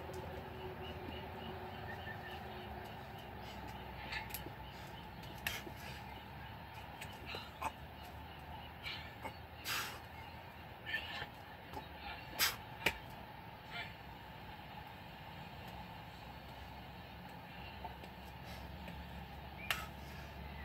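A man doing six-pump burpees on a concrete patio: irregular short sharp sounds of hands and shoes on the concrete and hard breaths over a steady background hum, the loudest about twelve seconds in.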